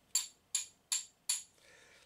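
A metal-headed stone carver's hammer tapping lightly four times at an even pace, about two or three taps a second. Each tap is a short, bright metallic clink with a brief ring.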